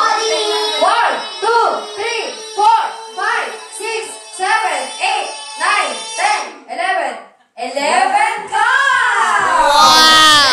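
A boy singing into a handheld microphone: a run of short sung syllables, a brief break, then one long held note that wavers in pitch near the end.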